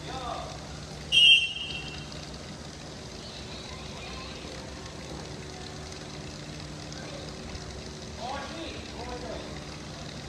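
A whistle blown once, short and loud, about a second in. Children's voices come before and after it over a steady low hum.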